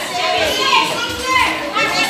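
Children talking and calling out in high voices, overlapping with other chatter in the room.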